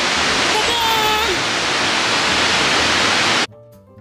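Fukuroda Falls, a four-tiered waterfall, heard close up as a loud, steady rush of falling water. It cuts off suddenly near the end.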